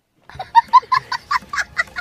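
Domestic hen cackling: a quick run of short, high clucks, about five a second, starting about half a second in.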